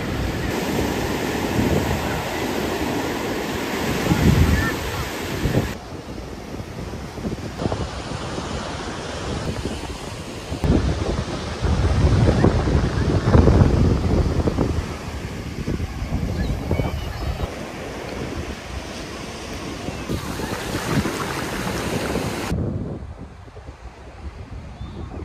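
Ocean surf breaking on a beach, with wind buffeting the microphone; the wash shifts abruptly several times where the clips change.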